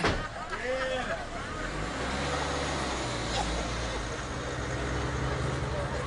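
A car door shuts with a slam right at the start, then a Volvo estate car's engine runs steadily as the car pulls away, with a few brief voices in the first second.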